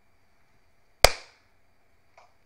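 A single sharp hand clap about a second in, followed by a brief echo.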